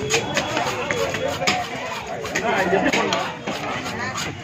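Knife scraping the scales off a pomfret on a wooden block in quick, uneven strokes, each a short sharp scrape, with people talking close by throughout.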